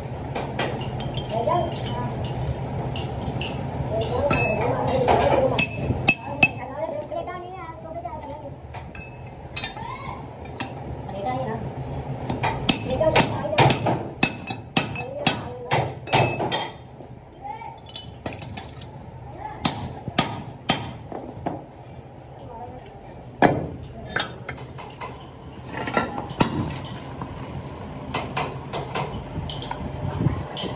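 Hammer striking a cast-iron pump housing: irregular sharp metallic knocks and clinks, coming in quick runs through the middle of the stretch. A steady low hum runs underneath.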